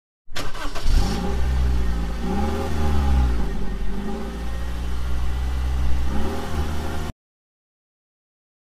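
A car engine starting and revving, a deep rumble that rises and falls in pitch a few times, then cuts off abruptly about seven seconds in.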